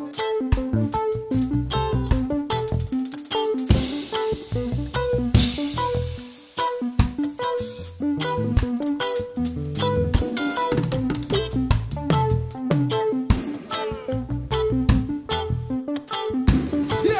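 Live band playing an instrumental passage: drum kit with snare, bass drum and cymbals, electric guitar, bass guitar and electric keyboard, with cymbal crashes a few seconds in.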